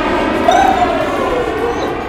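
A cartoon rocket flight sound effect: a steady rushing noise, with a tone that glides up and then down over it.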